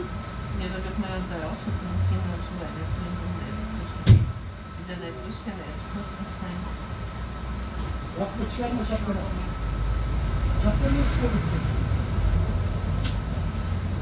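Inside a city bus: the diesel engine's low rumble under a faint steady whine, growing louder about ten seconds in as the bus pulls away. A single sharp knock about four seconds in is the loudest sound.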